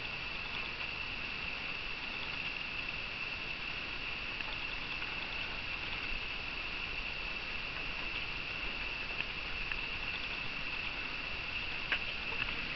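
Night insects chirping in a steady high chorus, with faint scattered taps and patters.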